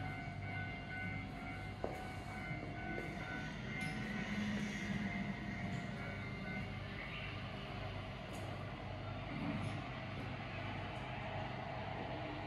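Steady low hum of an idling diesel train, heard from inside the station hall, with a few steady tones over it. There is a single brief knock about two seconds in.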